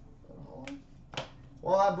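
Two sharp snaps about half a second apart as trading cards are handled by hand, with faint rustling before them. A man's voice starts near the end.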